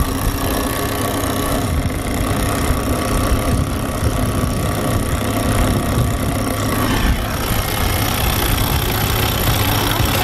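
Wind buffeting the microphone in a steady low rumble, with the catamaran's engine running underneath.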